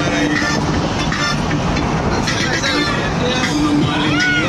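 Steady running noise of a moving vehicle heard from inside, under several people's voices.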